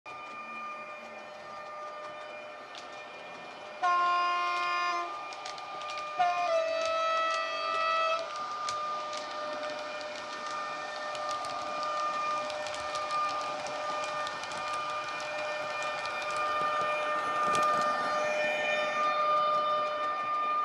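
Model train's DCC sound decoder (a modified ESU LokSound file for an Austrian Taurus electric loco) playing through the model's speaker: a steady electric whine, with two horn blasts at different pitches about four and six seconds in. Running sound with light clicking follows as the train moves.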